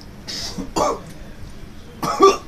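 A man coughing twice, a breathy first cough and a louder second about half a second later, right after gulping down beer.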